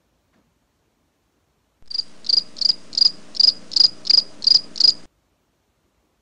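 Cricket chirping sound effect, the comic 'crickets' cue for silence while waiting for an answer: nine evenly spaced high chirps, about three a second, starting about two seconds in and cutting off abruptly.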